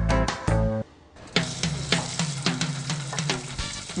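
Background music with a steady drum beat, coming in about a second and a half in after a brief lull.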